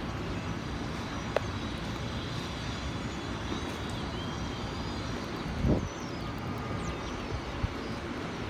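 Steady distant city traffic noise, a low rumble, with a brief low thump a little before six seconds in.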